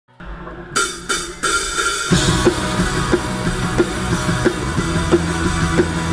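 Live rock band with a close-miked drum kit: three sharp hits about a second in, then the full band comes in about two seconds in, with a drum accent about every two-thirds of a second over a sustained bass note.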